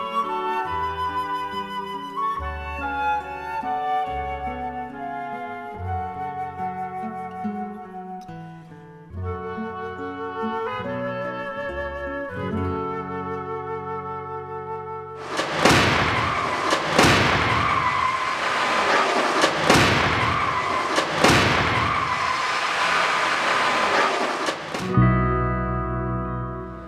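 Instrumental music led by a flute. About fifteen seconds in it gives way to roughly ten seconds of loud crashing, a run of sharp impacts and crunching noise from the 2013 Volvo XC60 striking the rigid barrier in the small overlap frontal crash test. Music returns near the end.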